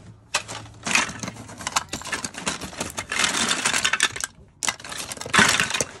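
Small hard plastic toys and action figures clattering and rattling against each other as a hand rummages through a cardboard box full of them. The rattling comes in two stretches, with a brief pause a little after four seconds in.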